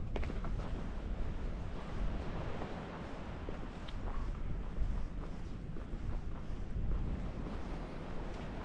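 Strong wind buffeting the microphone, a low rumble that swells and fades unevenly.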